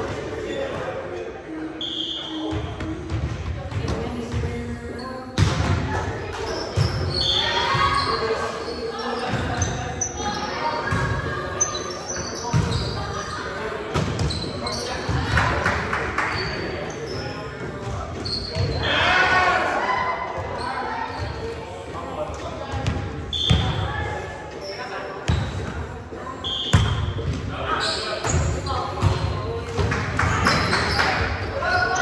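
Volleyball rally in a large, echoing gym: repeated thuds of the ball being struck by players' hands and arms and bouncing on the court floor, over a steady background of players' calls and chatter.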